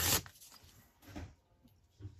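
Paper tearing along a ruler's edge: one short rip at the very start, then faint rustling as the torn strip is moved.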